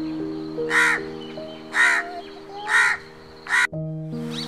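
A crow cawing four times, about once a second, each caw short and loud, over soft background music.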